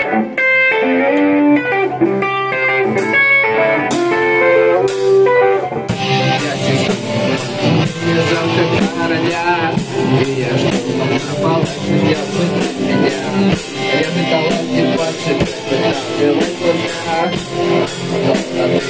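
Live rock band: an electric guitar plays a riff alone. About six seconds in, the drums and cymbals come in and the full band plays on with a steady beat.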